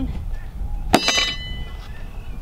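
A wooden package of bees bumped down once: a sharp knock with a brief metallic ring about a second in, jarring the clustered bees to the bottom of the package. Low wind rumble on the microphone throughout.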